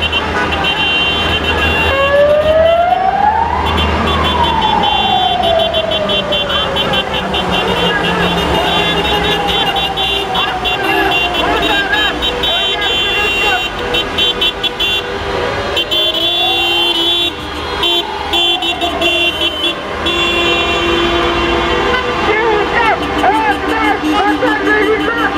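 Many vehicle horns honking over and over in a slow-moving convoy. A siren wails slowly up and falls back twice, about two seconds in and again about sixteen seconds in, over the low rumble of traffic.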